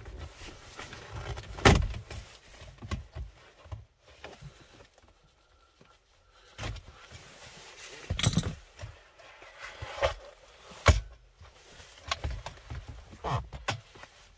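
Plastic centre-console trim being pried loose by hand around a manual gear lever. Three sharp clip pops and snaps stand out, one about two seconds in, one about eight seconds in and one near eleven seconds, with smaller clicks and handling rustle between them and a quieter stretch in the middle.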